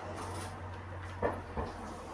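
Two short knocks a fraction of a second apart, handling sounds, over a steady low hum.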